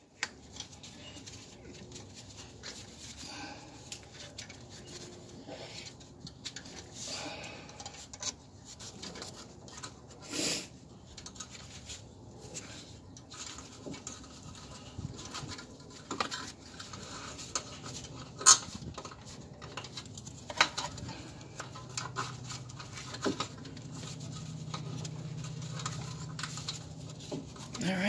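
Faint scratching, rubbing and small clicks of a gloved hand threading a wire through the bolt hole of a rear suspension knuckle, with one sharper click about two-thirds through. A faint low hum comes in during the last third.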